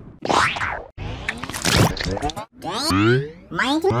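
Digitally warped audio from an effects edit: two noisy swooshes in the first two seconds, then a string of rising-and-falling pitch swoops like cartoon boings.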